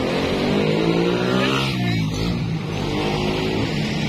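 A motor vehicle passing close by on the road, its engine note rising as it approaches and dropping as it goes past about two seconds in.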